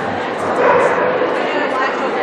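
A dog barking over the chatter of people in a large hall.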